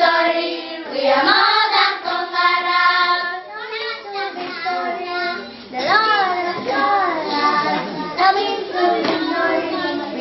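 A group of children singing together in unison without instruments.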